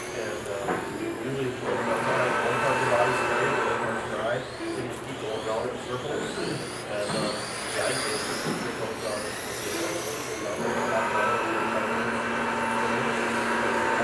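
Electric RC touring cars (Vintage Trans-Am class) running laps on a carpet track: several high motor whines rise and fall in pitch as the cars accelerate and brake, and a steadier whine holds for a few seconds twice. Voices chatter in the background.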